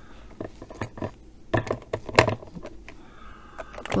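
Plastic markers clicking and knocking against each other as they are sorted and set back in order, in a handful of irregular taps.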